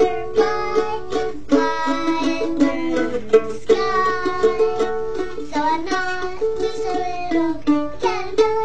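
Music: a plucked string instrument playing the accompaniment of a simple children's song, with evenly repeated plucked notes and a melody line over them.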